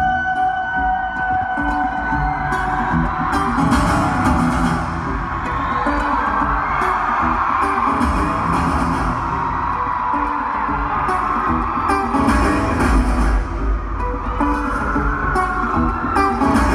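Live amplified concert music heard from the stands of an arena: a solo performer's guitar, with a heavy bass coming in near the end.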